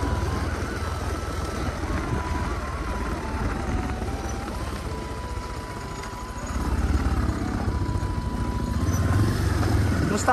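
Motorcycle engine running with wind buffeting the microphone: a deep rumble that grows louder about two-thirds of the way through, with a thin whine above it that steps up and down in pitch.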